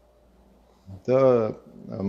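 A man's voice: a pause of near silence, then about a second in a single drawn-out spoken syllable whose pitch rises and falls.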